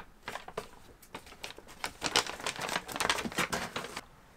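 Brown wrapping paper crinkling and tearing as a gift box is unwrapped. It comes as a run of quick rustles that grows denser and louder in the second half.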